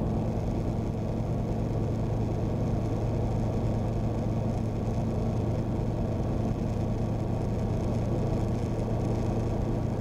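Tecnam P92 Echo Super light sport aircraft's engine and propeller droning steadily in the cockpit, holding one low, even pitch throughout the descent on approach.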